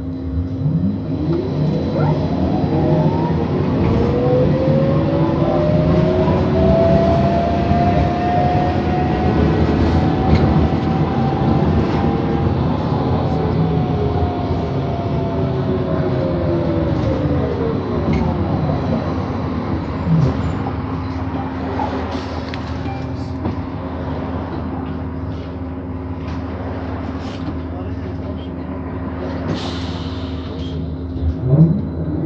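City bus heard from inside, running along the road. Its drive whine rises in pitch as it speeds up over the first several seconds, holds, then falls away as it slows in the second half. A steady low hum runs underneath.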